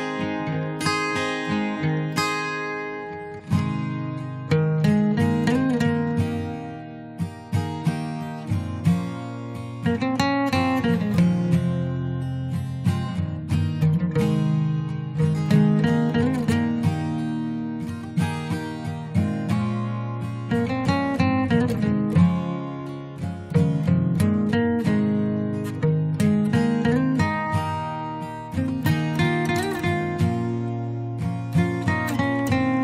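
Background music led by acoustic guitar, plucked and strummed in a steady, repeating pattern.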